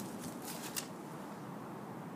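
A few short rustling clicks close to the microphone in the first second, then a steady faint background hiss.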